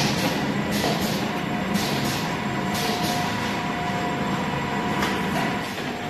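Automatic piston filling and screw-capping machine running, a steady mechanical noise with a low hum and a thin steady whine.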